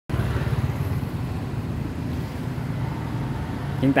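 An engine idling with a steady low rumble. A man starts speaking just before the end.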